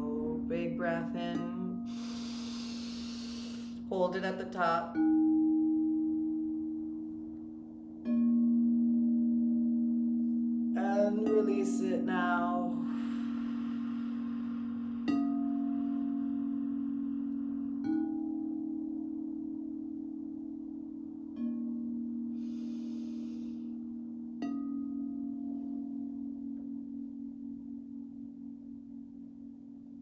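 Crystal singing bowls struck with a mallet, one after another about every three seconds, each strike shifting the low sustained ringing tone to a new pitch as it slowly fades. Wordless vocal toning joins in a few times, and a breath is heard early on.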